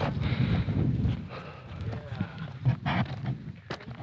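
Footsteps on dry, sandy desert ground as someone walks with the camera, over a low rumble of wind and handling on the microphone. A few sharper crunches and knocks come in the second half.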